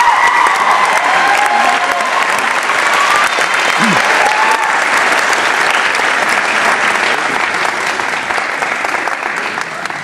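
Audience applauding, with a few shouted cheers in the first few seconds; the clapping dies away near the end.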